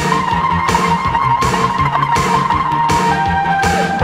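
Post-punk/new wave band recording: a steady drum beat and bass under a long held high lead tone, with the lead bending down in pitch near the end.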